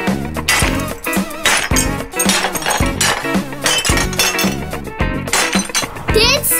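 Upbeat children's background music with a steady beat, over a hammer smashing a painted ceramic plate, with sharp cracks and the clink of broken shards.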